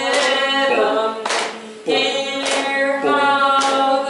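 Voices singing a song together, a woman's voice leading, on long held notes, with a short break in the singing about a second and a half in. Sharp beats about once a second keep time with the song.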